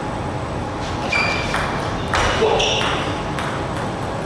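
Table tennis rally: the ball clicking off bats and table several times, with a short high squeak about a second in. A louder burst follows just past halfway, over steady hall noise.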